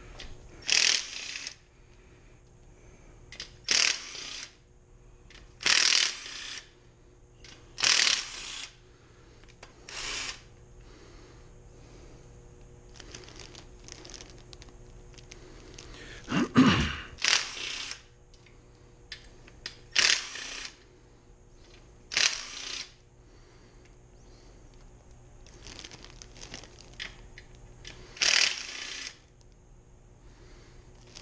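Compact cordless impact driver hammering bolts loose from an engine block in short bursts of under a second, about ten times, with quieter pauses between.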